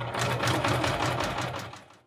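Singer electric sewing machine running, its needle stitching rapidly through small layers of fabric pinned to a paper-like stabilizer, with a low motor hum. It winds down and stops just before the end.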